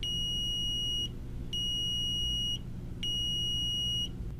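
Arcom Navigator Plus leakage meter sounding three consecutive high-pitched beeps, each about a second long and about a second and a half apart. The three beeps are its buffer alert: a buffer issue, with Wi-Fi or server connection lost and leakage data being stored, that needs attention before data is lost.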